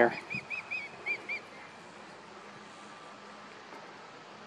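Osprey calling: a quick series of about six short, clear whistled notes, each rising then falling, in the first second and a half. A territorial call at a person approaching the nest.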